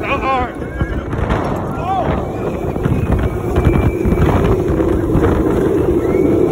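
West Coast Racers roller coaster train running fast along the track, with the wind rushing over the microphone and the train rumbling. Riders shout and whoop just after the start and again about two seconds in.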